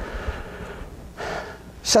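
A man's sharp in-breath through the mouth about a second in, in a pause between phrases, over a faint steady low room hum; his speech starts again near the end.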